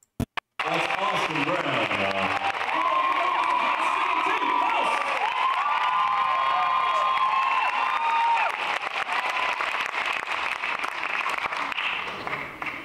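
Live concert audience cheering, applauding and screaming, with many high whoops over the clapping, after a few sharp clicks at the start.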